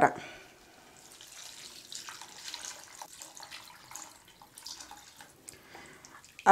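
Water poured from a plastic cup into a steel pan of sautéed vegetables, a faint splashing pour onto the hot vegetables.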